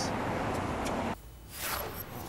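Steady outdoor background noise at a roadside live-truck location, cut off suddenly about a second in, followed by a brief sweeping whoosh.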